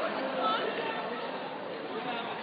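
Street crowd chatter: many people's voices mixing together, with no single voice standing out.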